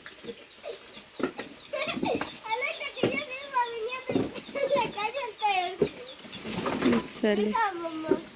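Indistinct, fairly quiet voices of children talking and calling in short phrases, starting about two seconds in.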